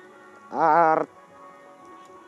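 A single short, quavering animal call, about half a second long, a little after the start, over faint steady background music.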